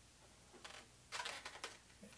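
A paint marker drawing on balloon latex: a few short, faint scratchy strokes about a second in, after a near-quiet start.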